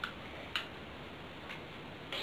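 Three short plastic clicks from a hot glue gun being handled, spaced about half a second and then a second apart.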